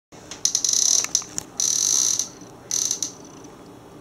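Wooden kitchen cabinet door creaking on its hinges as a cat pushes it open, in three high-pitched bursts, the middle one the longest.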